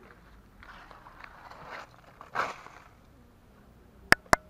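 Aluminium foil crinkling and tearing as a knife cuts open a foil-wrapped, ember-baked fish, with a louder crunch about two and a half seconds in.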